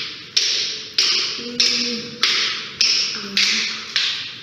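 A steady beat of sharp, hissy percussion hits, one about every 0.6 seconds, each dying away quickly, with a faint low tune underneath: the soundtrack of a TikTok clip.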